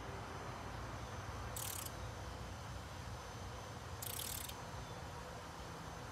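An insect calling outdoors: two short, high, buzzy bursts about two and a half seconds apart, over a low steady rumble.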